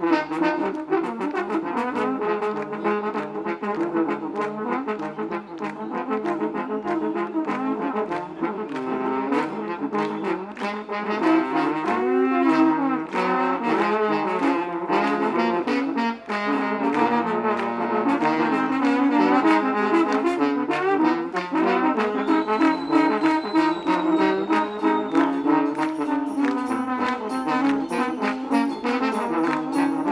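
A horn section of three trombones playing a loud instrumental passage together, backed by electric guitar, bass guitar and a drum kit keeping a steady beat.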